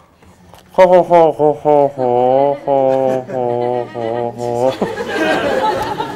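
A man's voice gives a run of short syllables, then several drawn-out, level-pitched ones. Audience laughter takes over near the end.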